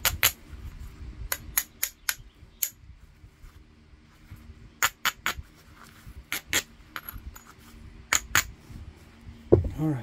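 Coarse abrading stone dragged in short strokes along the edge of a heat-treated Mississippi gravel chert preform, grinding the edge to prepare platforms for flaking. It gives sharp, gritty clicks in small irregular groups of two or three.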